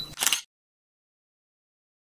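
A brief sharp noise, two quick pulses in the first half second, then dead digital silence.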